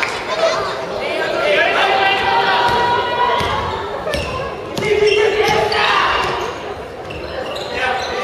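A basketball dribbled on a wooden gym floor during play, heard as sharp bounces among players' and bench shouts that echo in a large gym hall.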